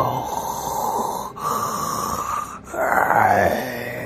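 Zombie groaning: three drawn-out, raspy groans in a row, the last one rising in pitch.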